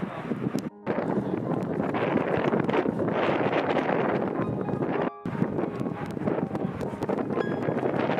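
A loud, uneven rushing noise that breaks off sharply for a moment twice, a little under a second in and about five seconds in.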